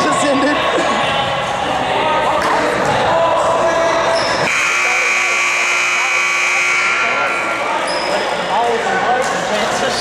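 Gym scoreboard buzzer sounding one steady, high tone for about three seconds, starting about halfway in, as the game clock runs out. Before it, a basketball bounces on the hardwood court.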